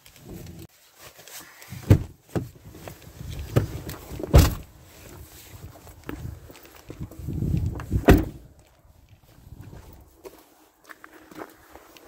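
Pickup truck cab doors opening and shutting, with three sharp thuds about two, four and eight seconds in, amid rustling and footsteps as people get out and walk over a snowy parking lot.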